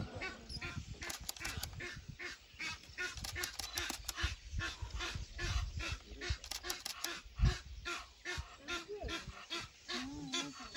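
Ducks on the waterhole calling in a quick run of short, harsh calls, several a second, with a few low thumps on the microphone, the loudest about seven seconds in.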